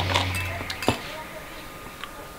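A few light clinks of a metal spoon against a bowl as someone eats quickly, the sharpest just under a second in.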